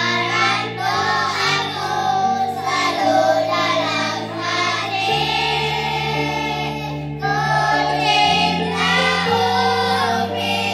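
A group of children singing an Indonesian Islamic children's song together in unison, over an instrumental backing whose held low notes change every second or two.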